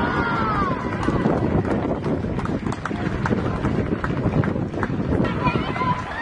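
Spectators and players cheering and shouting as a goal goes in. One loud call rises and falls in the first second, all over a dense low rumble.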